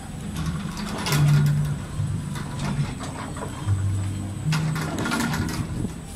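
Merry-go-round music playing, its low bass notes stepping from one pitch to the next.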